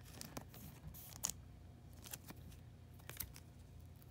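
Faint, scattered crinkles and ticks of a thin clear plastic penny sleeve being handled as a trading card is slid into it.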